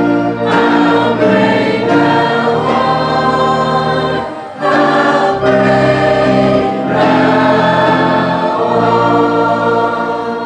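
Church choir singing a gospel hymn in parts with organ accompaniment, held bass notes under the voices. A short break between phrases comes about four and a half seconds in.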